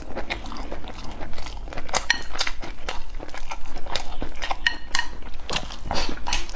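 Close-miked chewing of meat and rice porridge, with many short wet mouth clicks and smacks.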